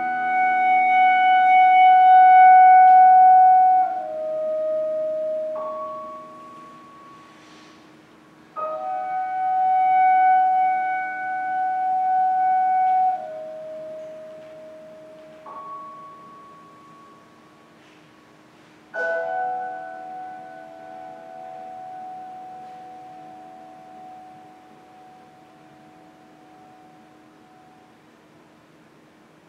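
Clarinet and piano playing slow music of long held notes that swell and fall away. It comes in three phrases, each beginning with a sudden attack: one at the start, one about nine seconds in and one about nineteen seconds in. The last phrase fades slowly.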